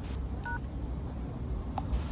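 One short touch-tone keypad beep from a smartphone dial pad as the # key is pressed, finishing the M-Pesa USSD code *210#. A brief tick follows near the end, over a steady low rumble.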